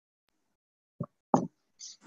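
Dead silence, then two short dull thumps about a third of a second apart, followed by a brief hiss just before the end.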